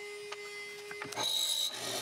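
Benchtop hollow-chisel mortiser starting to cut a mortise in a 2x4, about a second in, with a brief high squeak as the chisel plunges into the wood.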